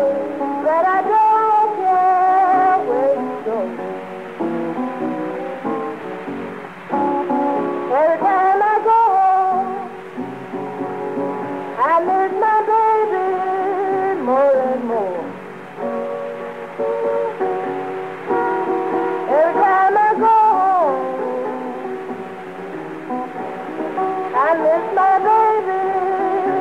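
A 1930s Mississippi country blues record with acoustic guitar accompaniment and swooping sung or played phrases every few seconds. The sound is thin and narrow, as on an old 78 transfer.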